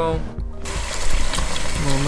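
Water running from a tap and splashing into a plastic basin, a steady rush that begins about half a second in.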